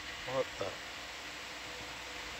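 A brief spoken exclamation, then a steady background hiss with faint constant hum tones.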